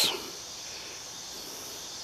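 A steady chorus of insects, a high, even buzz with no change through the moment.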